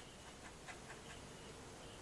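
Faint scratching of a paintbrush working acrylic paint on canvas: a few light ticks in the first second over quiet room tone.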